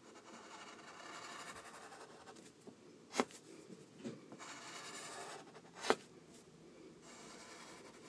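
Pencil lead scratching on paper in drawing strokes, faint, with two sharp clicks, about three seconds in and just before six seconds.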